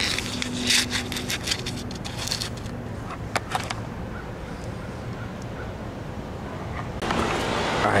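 Rustling and crackling of dry leaves and ivy being brushed, with handling noise, over the first few seconds. Then a quieter stretch with a steady low background hum, and a man's voice near the end.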